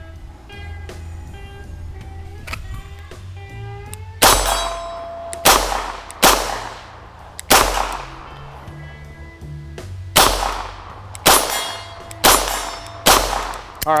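Beretta 92 9mm pistol fired eight times, slowly at first and then about one shot a second, with steel silhouette targets ringing with a clang on hits.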